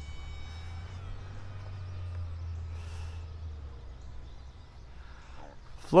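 Electric RC airplane's motor and three-blade propeller whining and falling in pitch as the throttle is eased back, fading away within about the first second. A faint low rumble of wind on the microphone follows.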